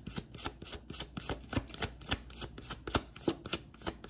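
A tarot deck being shuffled by hand: a rapid, irregular run of short papery card clicks, several a second.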